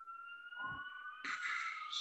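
A faint siren wailing, its pitch rising slowly and steadily. A soft rustle joins it in the second half.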